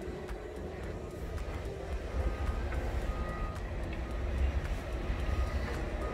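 Low outdoor rumble of distant vehicles and construction machinery, with faint short high beeps recurring about once a second from a couple of seconds in.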